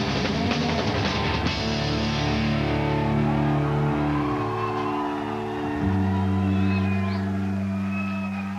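Rock music with electric guitar and drums. The drumming stops about a second and a half in, and held guitar and bass notes ring out for the rest, with some high sliding tones above them.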